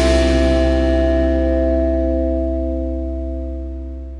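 Final chord of a rock song left to ring out on guitars and bass, one held chord with a deep bass note fading slowly away.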